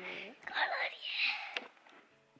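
A person whispering a few words close to the microphone.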